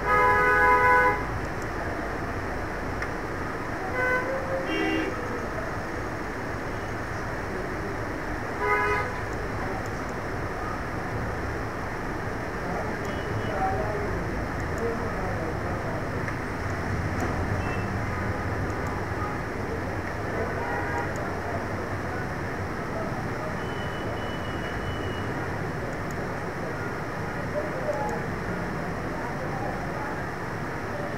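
Steady background noise, with a brief loud pitched toot in the first second and shorter, fainter ones about four and nine seconds in.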